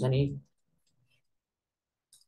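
A man's voice ending a word in the first half-second, then near silence.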